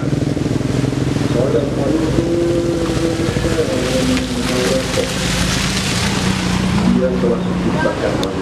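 A background song with long held sung notes, stepping down in pitch. Under it, a small Datsun car creeps over a muddy, potholed road, its tyres and engine loudest as it passes about five seconds in.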